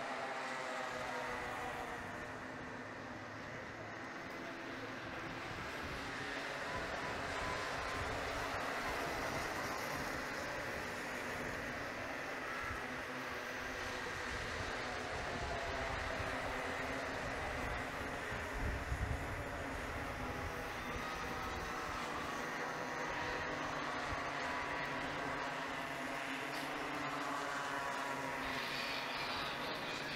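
Small two-stroke engines of Bambino-class racing karts running on track, several at once, their pitch rising and falling as the drivers accelerate and lift through the corners. A short low buffeting comes about two-thirds of the way in.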